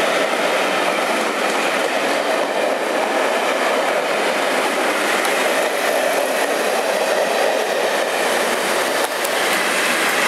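Train of passenger coaches rolling slowly past at close range, a steady rumble and hiss of wheels on rail. Near the end the sound changes as the trailing English Electric Class 37 diesel locomotive comes past.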